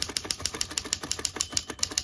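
Typing at speed on a 1926 Remington Portable typewriter: a rapid, even run of typebar strikes, about ten a second, from a light, snappy action.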